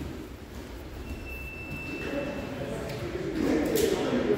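Indistinct voices echoing in a large hall, growing louder in the second half, with a brief thin high squeak about a second in.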